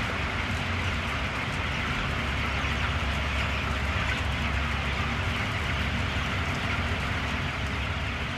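Steady din of a crowded broiler chicken house: a low mechanical hum under the dense, blended chatter of thousands of young broiler chickens.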